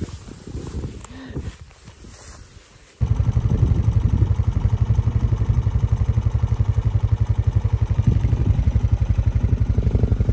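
Soft rustling for about three seconds. Then, suddenly, a farm vehicle's engine running steadily at constant speed, with a fast, even beat.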